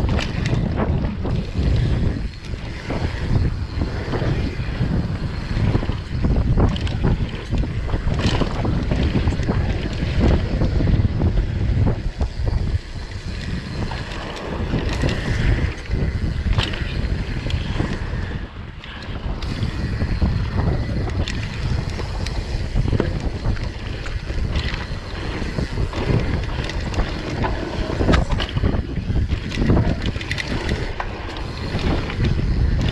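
Riding a Transition TR11 downhill mountain bike fast down dry dirt singletrack: continuous wind rush on the microphone and the rumble of knobby tyres over the dirt, broken by frequent short rattles and knocks from the bike over bumps.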